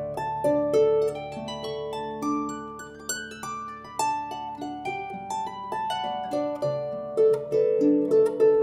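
Dusty Strings FH36S lever harp playing a slow air: plucked notes ring on and overlap, with the melody above lower accompanying notes.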